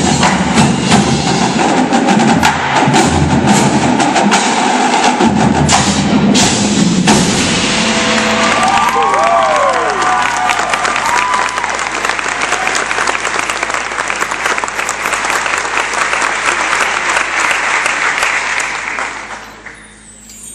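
Indoor percussion ensemble playing loudly: marching drums with mallet keyboards and drum kit, driving to a big hit about seven seconds in. A sustained noisy wash follows and fades out near the end.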